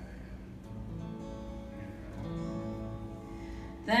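Acoustic guitar playing the instrumental intro to a gospel song, the chords changing every second or so. Singing comes in loudly at the very end.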